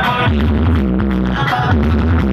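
Loud DJ remix music with heavy bass, played through a large DJ sound system, its phrase repeating about every one and a half seconds.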